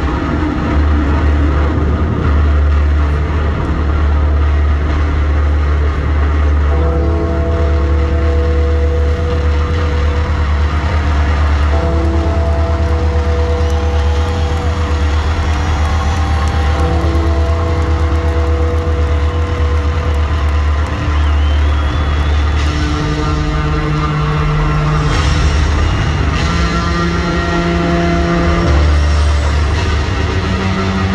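Heavily distorted electric bass solo played at arena volume: a steady, deep low note runs underneath while longer held higher notes change every few seconds.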